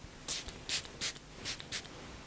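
A finger-pump spray bottle of heat-protecting shine mist spritzing onto damp hair: about five short hisses in quick succession.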